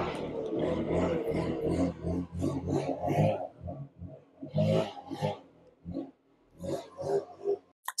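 A lawn-care machine's small engine running just outside, heard through the walls of a thinly insulated new house, coming and going in uneven surges with brief lulls.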